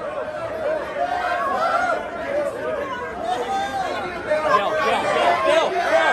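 Crowd chatter: many people talking over one another at once, growing louder over the last second or two.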